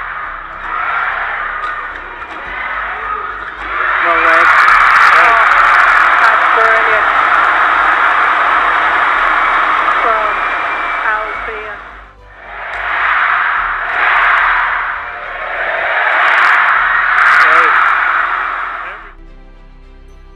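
Large arena crowd at a badminton match cheering and shouting, rising in loud waves: a long surge from about four seconds in, a brief dip, then two more swells before it dies away near the end. Quiet background music runs underneath.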